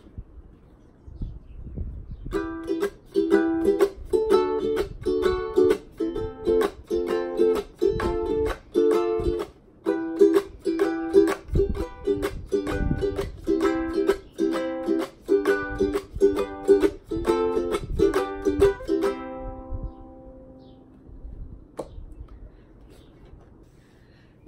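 Mitchell MU50SE acoustic-electric concert ukulele with a solid cedar top, freshly tuned, strummed through a chord progression. The strumming starts about two seconds in and stops about 19 seconds in, when the last chord rings out and fades.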